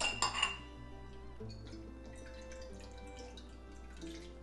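Soft background music with sustained notes. Near the start there is a light clink of glass and the faint trickle of vinegar being poured into a measuring cup.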